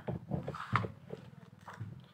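A pen writing a number on a sheet of paper on a table: a few short scratches and taps, the loudest about three quarters of a second in.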